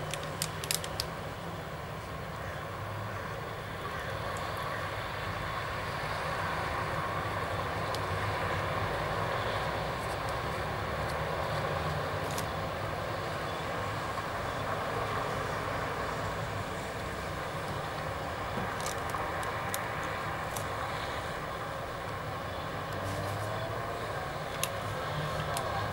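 Street traffic: cars passing with a steady hum of engines and tyres that swells and fades slowly. A few sharp clicks come just after the start and again about two-thirds of the way through.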